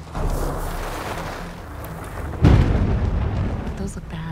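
Storm sound effects: a steady rush of rain and wind, then a sudden loud thunderclap about two and a half seconds in that rumbles on, over a low sustained music drone.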